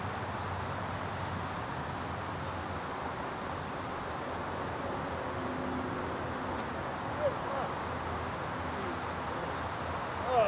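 Steady outdoor background noise, with a short faint chirp about seven seconds in.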